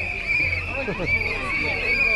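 Crowd of people talking and calling out at once, with a steady high-pitched tone held underneath.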